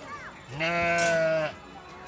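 A young farm animal bleats once, a single steady call about a second long.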